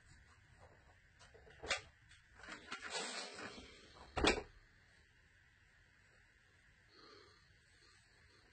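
Handling noises at a work table: a short sharp knock, a stretch of rustling, then a louder brief knock or clatter a little past the middle, as fabric pieces and tools are moved and set down.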